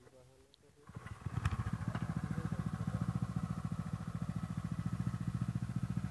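Small engine of a Honda power weeder coming in about a second in and running steadily with an even, rapid beat of about ten pulses a second.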